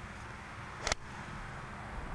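Golf club striking a ball off range turf: one crisp impact click about a second in, over the steady hiss of an old videotape recording.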